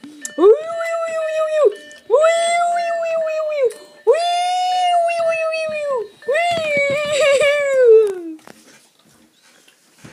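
A voice makes four long, held wailing calls, each about one and a half to two seconds long at one steady pitch with short breaks between them; the last call wavers and slides down at its end.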